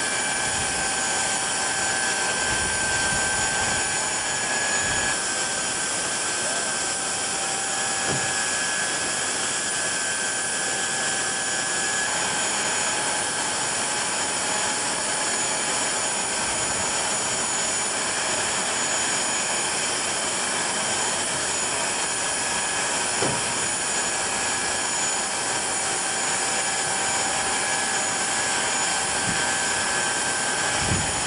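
Jet turbine running steadily on the ramp: an even rush with several steady high whine tones on top.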